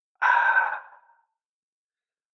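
A man's breathy sigh into the microphone, lasting just under a second and fading away.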